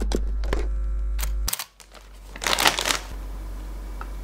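A low hum cuts off about a second and a half in. About halfway through comes a short, loud rustle of a foil potato-chip bag being handled.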